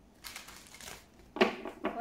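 Deck of oracle cards being shuffled by hand, the cards rustling and slapping together, with one sharp louder snap about one and a half seconds in.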